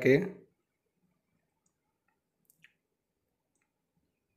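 Near silence, with two faint clicks close together about two and a half seconds in, from a thin metal shim washer being handled.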